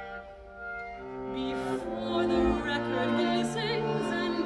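String quartet playing held chords, a low cello note sustained underneath. The music swells about a second in, and a high line with wide vibrato comes in near the end.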